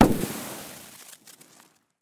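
Logo-reveal sound effect: a sudden bang-like burst that fades away over about a second and a half.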